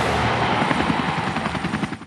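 Helicopter rotor sound effect in a TV outro jingle: a fast, even chopping that fades out at the end.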